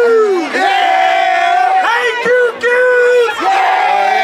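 A crowd of voices shouting long, drawn-out calls, several voices overlapping in a string of held shouts, each about half a second to a second long, during a fraternity stroll.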